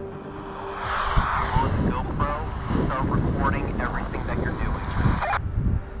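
A vehicle driving, with steady road and wind noise on the microphone and indistinct voices talking over it; the noise cuts off suddenly near the end.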